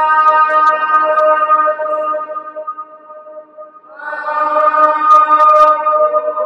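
A voice singing long held notes under the Pisa Baptistery's dome. Each note lingers in the very long echo, so the notes stack up and sound together as a chord. A fresh set of notes comes in about four seconds in and slowly dies away.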